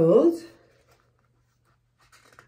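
A woman's short wordless vocal sound, its pitch dipping and coming back up, in the first half second; then near quiet with a faint steady low hum underneath.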